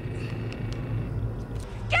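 A film soundtrack heard through the reaction: a low steady rumble, then near the end a woman starts shouting a name in a rising, strained voice.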